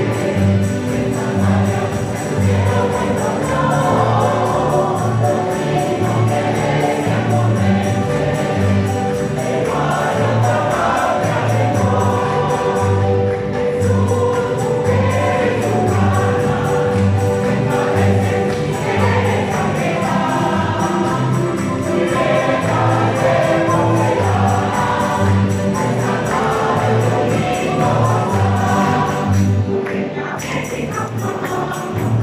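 Mixed choir singing with rondalla accompaniment: strummed guitars and a double bass playing low notes on a steady beat.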